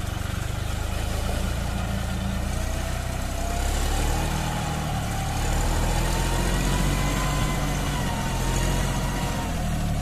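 John Deere 5310 tractor's three-cylinder diesel engine running steadily while the four-wheel-drive tractor drives through wet river sand and mud. A faint whine rises slowly in pitch a few seconds in and then holds.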